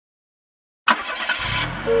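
Cartoon car sound effect: after a silent start, an engine starts suddenly about a second in and runs with a low rumble, and a two-tone car horn beep begins near the end.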